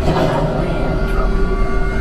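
Steady low rumble and electronic hum of the simulated Millennium Falcon cockpit played through the ride's speakers, the ship idling before takeoff, with a few indistinct voice sounds near the start.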